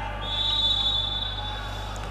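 Referee's whistle blown once: a single steady high tone lasting about a second over the hum of the sports hall, signalling the next serve.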